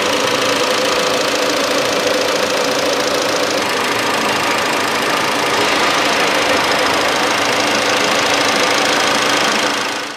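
The 2016 Nissan Versa's 1.6-litre four-cylinder engine idling steadily, heard close up in the open engine bay.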